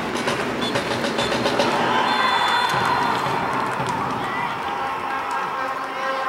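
Football stadium crowd in the stands with many hands clapping. A high whistle blast sounds about two seconds in, the referee's full-time whistle, and crowd noise follows.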